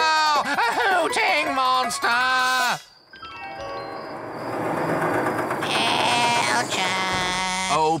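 A cartoon character's frightened cries, wobbling sharply in pitch, cut off suddenly about three seconds in; after a short hush, background music swells up.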